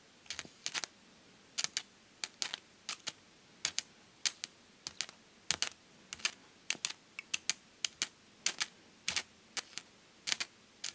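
Sharp, irregular clicks and snaps, roughly one or two a second. They come from a carbon rod, held in locking pliers on a simple DC welder, being dabbed against thin silicon-steel sheet to strike brief sparking arcs.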